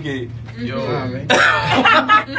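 People talking. Just past halfway comes a louder, harsher vocal burst.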